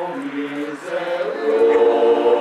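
Men's choir singing a cappella in long held notes, moving from a lower note up into a higher, louder chord about halfway through.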